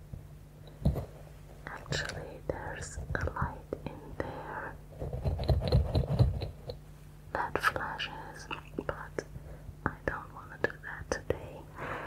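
Long fingernails tapping and squeezing a bead-filled squishy ball held close to the microphone: many sharp nail clicks over soft rustling, with a louder stretch of squeezing and handling in the middle.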